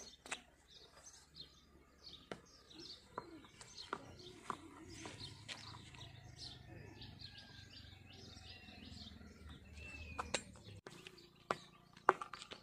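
Faint birdsong: many small birds chirping and calling, with a few light clicks and knocks mixed in.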